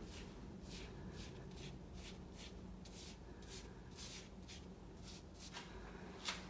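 Chinese ink brush swishing across paper in a string of short, faint strokes, about two a second, as short horizontal water lines are painted.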